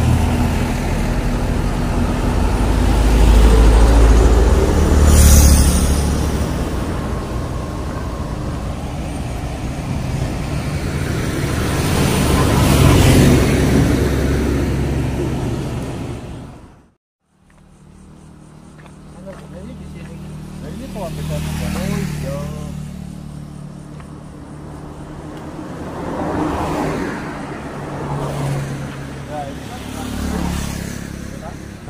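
Road traffic on a main road: vehicles pass one after another, each swelling and fading away, over a steady low engine hum. The sound cuts out completely for a moment about halfway through.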